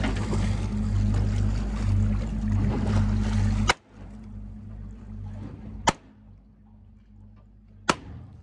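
Boat engine running steadily, cut by three sharp shots about 4 s in, about 6 s in and near the end: a handgun fired into a harpooned halibut at the boat's side. After the first shot the engine noise drops away abruptly and stays faint.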